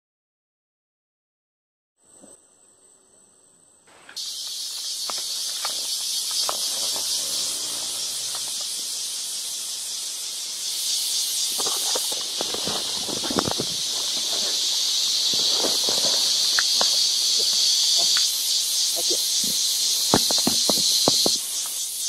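Dense, steady high-pitched chorus of rainforest insects, starting suddenly about four seconds in after silence and a faint high tone. Scattered rustles and knocks from movement through vegetation and leaf litter run under it.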